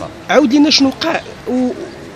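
A man's voice making short spoken sounds, a few of them held vowels at a level pitch, rather than running words.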